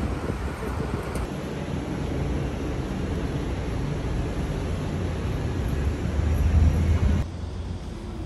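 Outdoor city street ambience: traffic noise with low wind rumble on the microphone. The sound changes abruptly about a second in and again near the end, where the footage cuts between shots.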